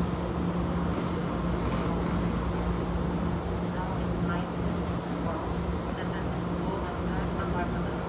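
Steady low hum of a stopped BART train at the platform, with a constant drone, and faint voices in the background.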